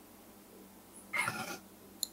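A woman crying: after a moment of quiet, one short, high, wavering whimper about a second in.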